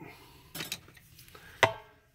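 Light handling noises on a tabletop: a few soft knocks and one sharper click a little past halfway, as a watercolor pencil is picked up beside the plastic model.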